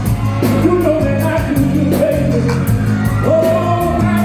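Live R&B performance: a male lead singer sings a gliding melody over a band with bass and a steady beat, heard loud through the concert PA.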